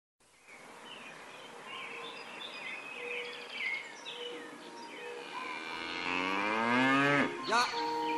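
A cow lowing: one long, loud moo starting about six seconds in and falling in pitch toward its end.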